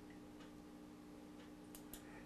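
Near silence: a faint steady hum with a few faint computer mouse clicks, one about half a second in and two in quick succession near the end.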